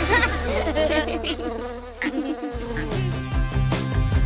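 Cartoon bee buzzing sound effect: a wavering buzz over a held low note that stops about two and a half seconds in. Then new upbeat music with a beat starts.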